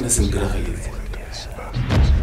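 A man speaking in dialogue over a steady low rumble, which swells near the end.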